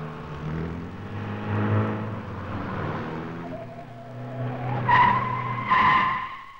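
A car engine running, rising in pitch near the end, followed by two short, loud tire squeals.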